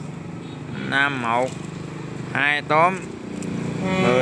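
A voice reading out lottery ticket numbers in Vietnamese in two short phrases, over a steady low hum of a small engine running.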